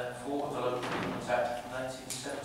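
A man speaking steadily into a desk microphone, reading aloud.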